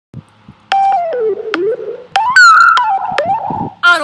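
Loud pitched tones that swoop down and back up in pitch in several separate glides, starting about a second in, with a few sharp clicks between them.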